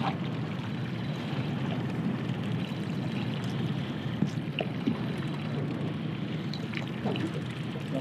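Small outboard kicker motor running steadily at trolling speed, with water washing behind the boat's stern. A few faint clicks come and go.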